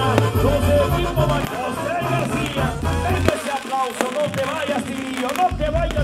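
Mexican banda music: brass melody lines over a pulsing tuba bass, playing steadily.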